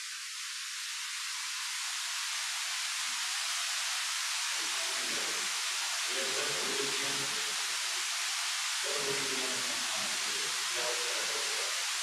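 Steady hiss of electronic noise on the audio line, filling the upper range. Faint, muffled voices sit under it from about four seconds in.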